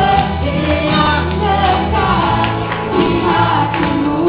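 A small group of voices singing an Indonesian worship song together, over steady low instrumental accompaniment.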